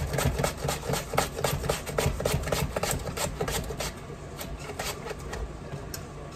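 Potato being slid back and forth over a stainless steel box grater, cutting thin slices: a quick run of rasping strokes, about four a second, that thins out and stops about two-thirds of the way in. A low steady hum stays underneath.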